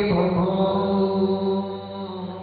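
Live music: one long note held at a steady pitch, a drone with its overtones, easing off slightly near the end.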